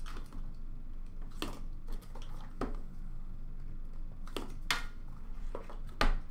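A cardboard trading-card hobby box being handled and opened by hand: light rustling with about five sharp taps and clicks of cardboard as the inner box is slid out of its sleeve.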